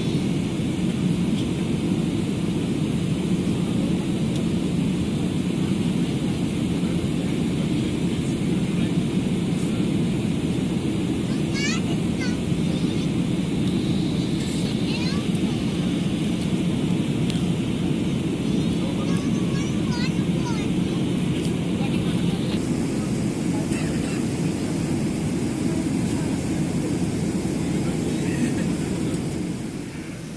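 Steady low roar inside a Boeing 777-300ER's passenger cabin in flight, engine and airflow noise heard from a seat.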